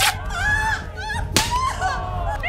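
Two sharp slap-like hits about a second and a half apart, over a woman's high-pitched cries and screams as she struggles.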